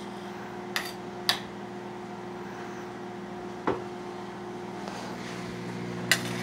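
A utensil clinks sharply against a metal cooking pot three times, twice close together about a second in and once more later. A steady low electrical hum runs underneath.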